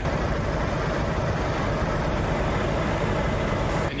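Steady, dense rumble of heavy vehicle engines running close by, unbroken throughout.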